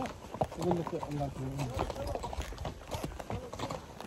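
Horse's hooves clip-clopping on a dirt trail, heard from the saddle as an irregular run of soft knocks.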